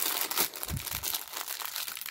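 Small clear plastic bag of LEGO pieces crinkling as it is handled between the fingers, with a soft low bump a little under a second in.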